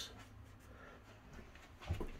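Quiet room tone in a small bedroom, with a faint low hum and one brief soft sound just before the end.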